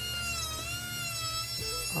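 Handheld wood router running with a Roman ogee bit cutting along a board's edge: a steady high-pitched motor whine over a low rumble, its pitch sagging slightly about half a second in and recovering.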